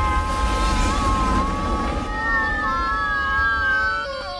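Explosion sound effect: a heavy low rumble runs on under several long, wavering wailing tones. A higher tone joins about halfway through and slides slowly down.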